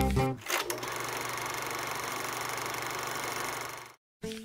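A piece of background music ends, followed by a couple of clicks and then a steady, fast, even mechanical clatter lasting about three seconds that fades out near the end.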